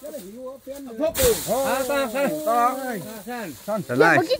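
Voices talking, with a sudden hissing burst about a second in that fades away over the following second.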